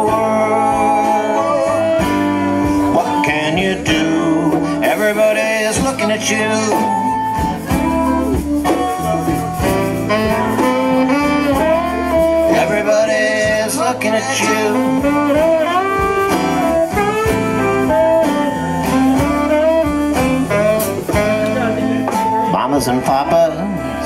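A live rock band playing an instrumental passage of a song: bass and drums keep a steady groove while a lead line bends and wanders above, with guitars and saxophone in the mix.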